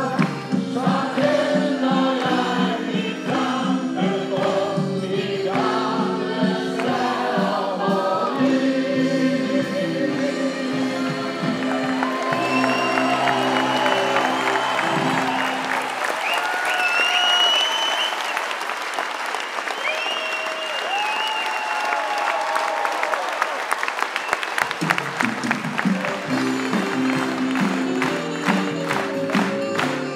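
A song sung by a group with band accompaniment, which stops after about 16 seconds and gives way to a theatre audience's sustained applause, with a few high held tones over it. The music starts again a few seconds before the end.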